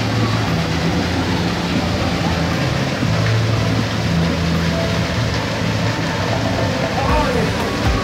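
Steady rushing of a rock-work waterfall close by.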